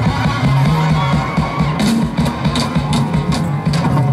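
Live band music through outdoor PA speakers: electric guitars and a bass line over a drum kit, with steady cymbal hits in the second half.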